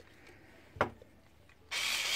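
A single sharp click about a second in as the charger's small plug is pushed into the cordless screwdriver's charging socket. Near the end comes about a second of rubbing noise from the charger and its cord being handled against the wooden workbench.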